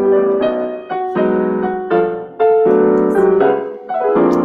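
Piano accompaniment track played from a small speaker held up to a computer microphone, running through the introduction of a show tune as a series of sustained chords that change about every half second to a second.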